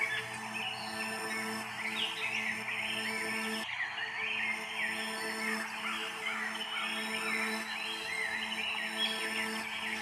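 Background music made of a steady held drone with recorded bird song chirping over it; the drone briefly drops out a little under four seconds in.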